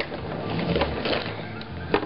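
Plastic shrink-wrap on a case of bottled water crinkling and rustling as a plastic water bottle is worked loose from it, with scattered small clicks and a sharper knock near the end.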